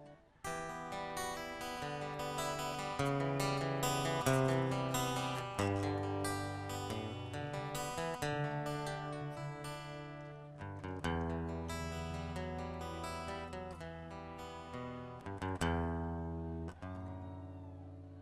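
Acoustic guitar strumming and picking chords over held low bass notes: the instrumental intro of a rock ballad, before the vocals enter.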